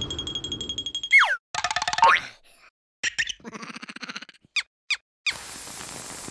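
Cartoon sound effects after a blast: a high steady ringing tone for about a second, a quick falling boing-like glide, then squeaky cartoon creature voices and two short falling chirps. About five seconds in, a steady fizzing hiss starts: the lit fuse of a firework rocket burning.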